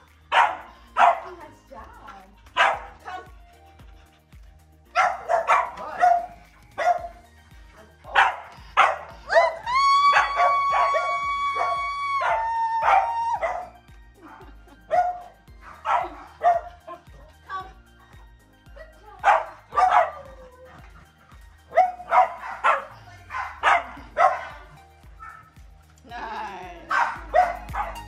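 German Shorthaired Pointer puppy barking in short, repeated bursts, with one long held high note for about three seconds around ten seconds in, over background music.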